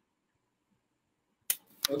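Near silence, broken about one and a half seconds in by a sharp click, with a second, fainter click just after as a man starts to speak.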